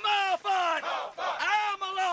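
Voices shouting long, held cries, about three in a row, each dropping in pitch at its end.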